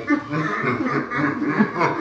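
A few people laughing together in short, repeated chuckles, at a shocking gag gift.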